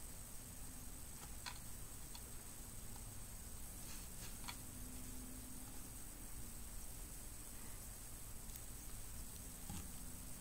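Faint handling of rubber loom bands on a metal hook: a few soft ticks, about four scattered through the first half, over a steady low hum of room noise.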